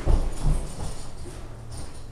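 Footsteps walking away on a hard floor: a few low knocks in the first half second that then fade into low room noise.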